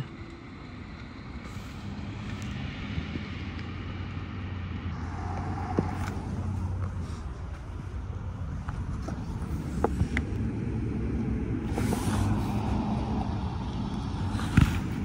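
A motor vehicle's engine running with a steady low hum over traffic noise, slowly growing louder. There are a few sharp clicks partway through.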